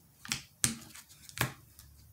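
A deck of oracle cards handled over a wooden table: three sharp snaps in the first second and a half, then a fainter one near the end.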